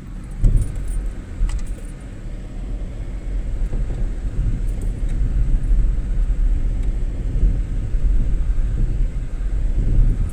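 Car driving slowly over a rough, patched street, heard from inside the cabin: a steady low rumble with a few light clicks and rattles, mostly in the first couple of seconds.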